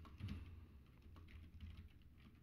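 Faint typing on a computer keyboard: a quick, uneven run of keystroke clicks.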